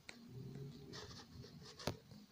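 Faint scratchy rubbing of a hand against a phone held close to its microphone, with one sharp click near the end.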